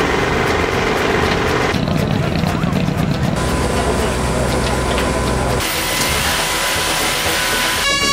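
Outdoor ambient noise with background voices and vehicle noise. Its character changes abruptly every couple of seconds as the footage cuts.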